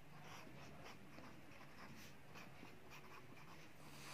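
Faint scratching of a pen writing on a paper workbook page, a run of short, irregular strokes.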